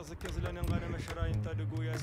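Faint, low man's voice with no clear words, with a few light clicks.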